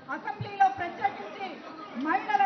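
Speech: a woman talking into a handheld microphone, with chatter beneath.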